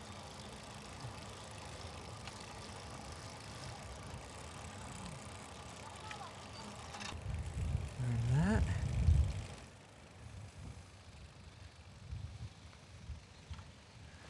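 Steady rolling and wind noise from a bicycle riding along a smooth asphalt bike street, with a louder rumble and a short voice sound around eight seconds in.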